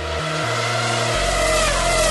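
A Formula 1 car's high-revving engine, the 2.4-litre Mercedes V8 of the 2010 McLaren MP4-25, running at speed. Its note climbs slightly and grows louder, then starts to drop in pitch near the end.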